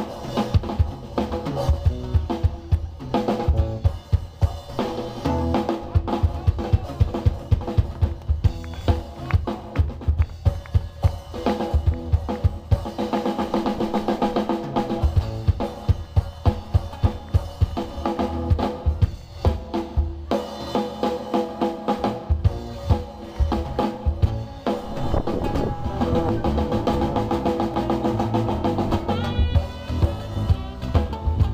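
Live band playing an instrumental stretch: a drum kit keeps up dense, regular kick and snare hits under acoustic guitar playing.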